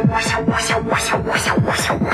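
Electronic dance music at a build-up: drum hits come faster and faster under a rising noise sweep.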